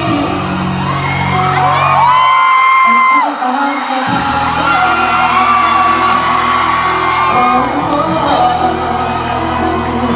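Live pop performance: a male vocalist sings held, gliding notes into a handheld microphone over backing music, with whoops from the audience. The bass of the accompaniment drops out for about a second and a half near the start, then comes back in.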